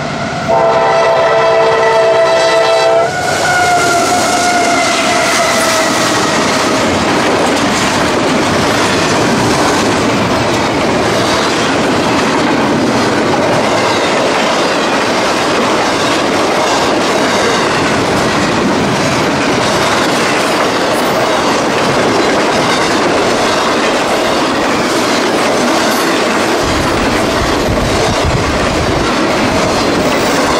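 CSX freight locomotive horn blowing one blast of about two and a half seconds near the start. A tone then falls in pitch as the locomotives go past, followed by the steady running noise and clickety-clack of double-stack container and trailer cars rolling by.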